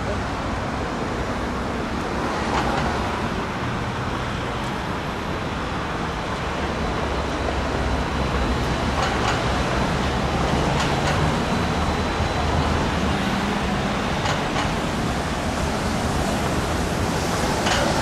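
Steady road traffic noise with a low engine hum, growing slightly louder about halfway through, and a few faint knocks at intervals.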